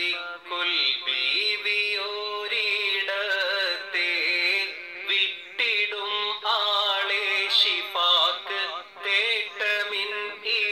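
A single voice singing a Malayalam Islamic devotional song (a mala) in long, ornamented phrases whose notes slide and waver. No instruments are heard.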